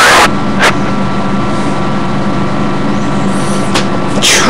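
Radio receiver static: a steady hiss with a low hum, cut by a short loud burst at the start and two brief clicks.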